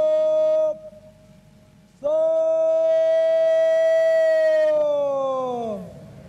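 Parade commander's drawn-out shouted words of command on a military parade ground. One held call cuts off just under a second in. A longer one is held steady for about four seconds from two seconds in, then falls in pitch as it ends.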